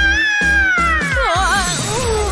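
A cartoon character's shrill scream: one long high-pitched cry that rises at the start, holds, then falls away with a wavering near the end, over background music.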